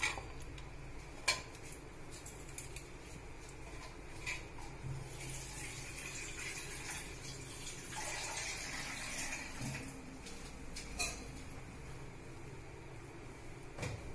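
Water being poured into a metal pressure cooker over chickpeas, with a few sharp clinks of the pot.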